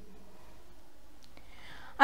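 Quiet room tone with a steady faint hiss and hum, two faint clicks a little past the middle, and a soft in-breath near the end.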